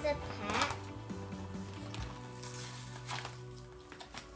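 A girl's voice sings a brief phrase about half a second in, over faint music with long held notes that fade out near the end.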